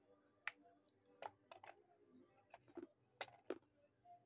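Sun-baked terracotta clay cup being chewed close to the microphone: about eight sharp, dry crunches and cracks at an uneven pace as the fired clay breaks between the teeth.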